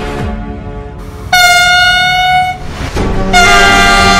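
Train horn sounding twice: a high blast of just over a second, then after a short gap a second blast that goes on.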